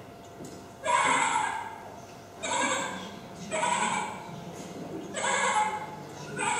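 Recorded animal calls played back through loudspeakers: four calls about a second and a half apart, each just under a second long.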